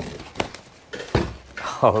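A shipping box being opened and its contents handled: three sharp knocks spread over the first second or so, then a man says "oh" near the end.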